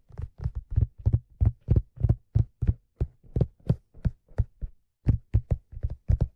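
Fingertips tapping on a black leather fedora close to the microphone: a quick, even run of low, dull taps, nearly four a second, with a brief pause about five seconds in.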